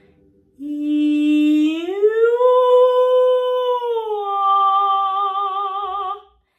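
A woman's voice singing one sol–mi–do slide in a single unbroken line. She holds a low note on "ee", glides up a major sixth into a held "ooh" in head voice, then slides down to "ah" and holds it with vibrato. It is the register-crossing exercise done without a break, sliding both ways rather than jumping.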